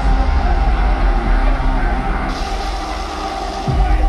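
Loud live rock music with a heavy bass low end, with a deep boom near the end.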